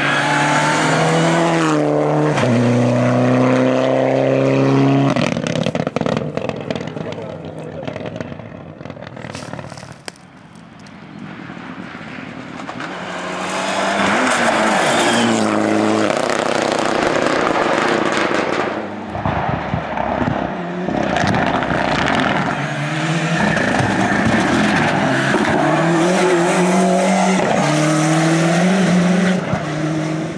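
Rally cars passing at speed, their engines revving up through gear changes; the first is a Mitsubishi Lancer Evolution. The engine sound dies away to its quietest about ten seconds in, then a second car comes up. Near the end an engine pulls up through several gears in a row.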